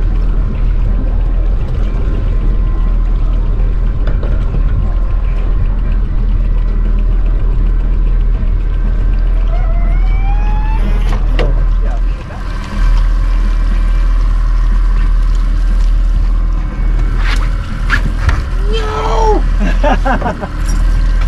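Boat engine running steadily with a deep, even drone. A few sharp knocks come about halfway through and again near the end.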